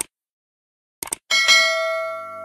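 Subscribe-button sound effects: a mouse click, a quick double click about a second later, then a notification bell chime that rings out and slowly fades.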